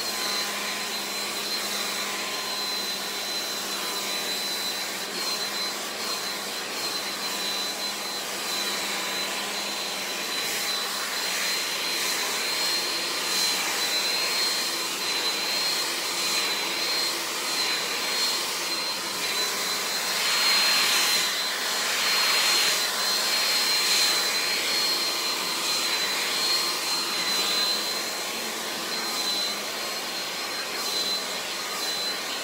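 Handheld hair dryer running steadily, a rushing airflow with a thin high whine, blow-drying freshly washed hair. It gets louder for a few seconds past the middle.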